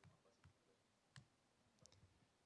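Near silence with a few faint, short clicks of laptop keys being typed.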